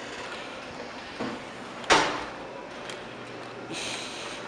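A badge-access entrance door swinging shut with a single thud about halfway through, after a lighter knock a little before.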